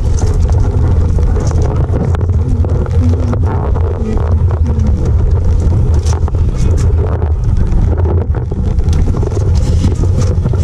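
Wind and rain on an action camera's microphone in a downpour: a steady low rumble of wind buffeting, with scattered patter of raindrops.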